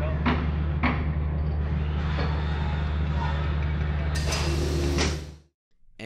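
Cartoon sound effects: evenly spaced footsteps, about two a second, over a steady low hum; the steps stop about a second in. Near the end a loud hissing rush plays and then cuts off suddenly.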